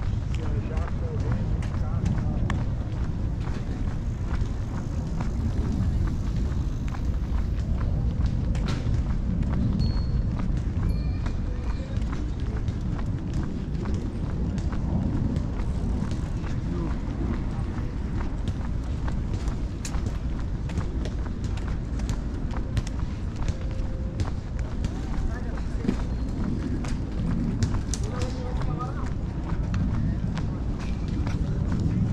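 Park walking ambience: the walker's footsteps on pavement over a steady low rumble, with indistinct voices of passers-by.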